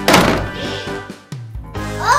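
A single loud thump at the door, a cartoon-style knock or bang sound effect, over cheerful background music that dips and changes near the end.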